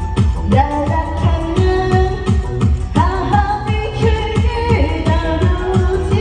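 A woman singing a pop song into a microphone over loud amplified backing music with a steady, even bass beat.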